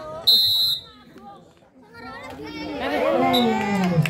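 Referee's whistle: one short, loud, high blast about half a second long, a fraction of a second in, stopping play. Voices of players and onlookers calling out follow from about halfway through.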